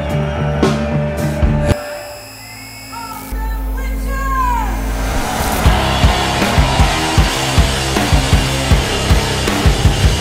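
Heavy psychedelic rock music played by a full band. About two seconds in the band drops out to a quiet stretch of low drone and falling, swooping tones. About five seconds in, the full band with drums comes back in.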